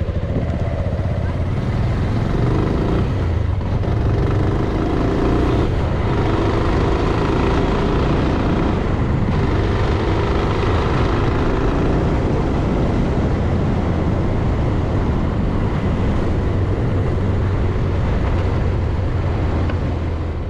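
Motorcycle running at steady road speed, heard from the moving bike as a constant low engine note under a steady rush of wind and road noise.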